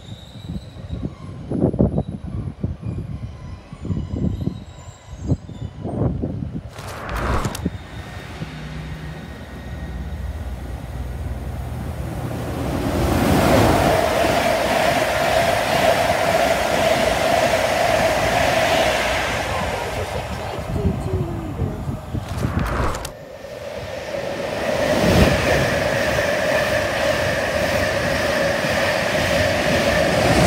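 Two InterCity 225 trains, each a Class 91 electric locomotive with Mark 4 coaches, passing through at speed one after the other: a loud rush of wheels on rail with a steady hum, building over a few seconds each time. Before them come scattered low thumps.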